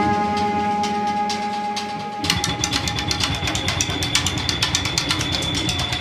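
Live band playing: a sustained chord rings out over light, regular beats, then about two seconds in the full band comes in with fast, busy drumming and cymbals.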